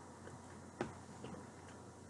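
A fork against a black plastic TV-dinner tray: one sharp click a little under a second in, among a few fainter ticks.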